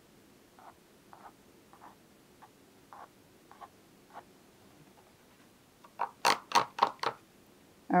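A few faint light ticks of a paintbrush working on paper, then, about six seconds in, a quick run of loud sharp clacks as the brush is rinsed in a ridged plastic water basin, knocking against its sides.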